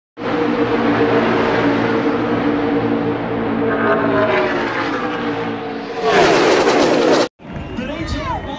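A pack of NASCAR Cup stock cars with V8 engines running at racing speed. About six seconds in a louder pass-by comes through, its pitch falling as the cars go by, and the sound cuts off suddenly a second later.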